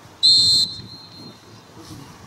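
Football referee's whistle: one short, sharp, high blast of about half a second that trails off faintly.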